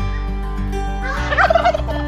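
A male domestic turkey (tom), displaying in full strut, gobbles once about a second in: a loud, rapid, warbling call lasting about a second. Steady background music plays underneath.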